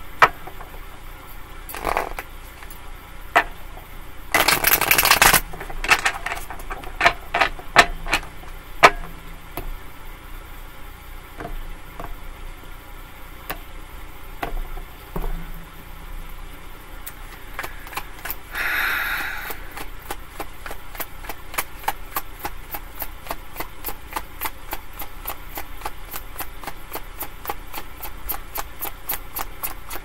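Tarot deck shuffled by hand: cards clicking and slapping against each other. There are two longer rushes of cards, about four and a half seconds in and again just before twenty seconds, and from there the clicks come thick and fast.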